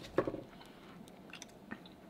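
Close-miked chewing and mouth sounds of people eating. There is one louder mouth sound near the start, then soft, scattered chewing clicks.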